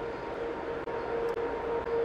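Charging chains of an electrostatic particle accelerator running around inside its tank as they carry charge to the high-voltage terminal: a steady mechanical hum with a constant mid-pitched tone.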